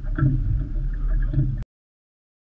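Low rumble of wind and boat noise on an open fishing boat, picked up by the camera's microphone, with a few short sharper sounds over it; it cuts off abruptly about one and a half seconds in.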